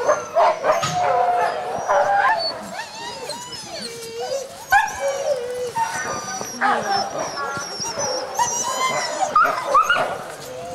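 A pack of harnessed sled dogs making an overlapping chorus of barks, whines and long gliding howls. This is the excited noise of sled-dog teams waiting in harness to run.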